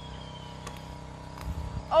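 Faint steady outdoor background with a few soft clicks and a brief low rumble, then a woman's voice starts an exclamation right at the end.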